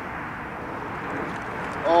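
Steady rushing background noise with no distinct events, then a man's loud exclamation of 'Oh!' near the end.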